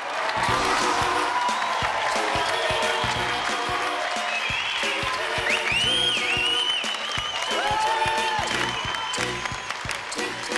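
Audience applauding and cheering, with a whistle or two about halfway through, over music with a steady beat.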